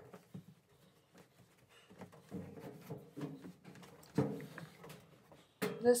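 A washing machine knocking and scraping as it is shifted down a staircase, with a few dull knocks, the loudest a little after four seconds in.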